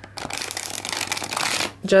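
A new tarot deck with still-stiff cards being riffle-shuffled: a rapid fluttering patter of cards interleaving for about a second and a half.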